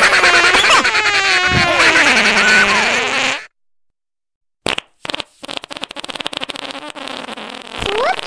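Fart sound effects from a novelty ringtone. A long, loud, wavering fart sinks in pitch and stops about three and a half seconds in. After a second of silence comes a short blip, then a long, rapid, sputtering fart.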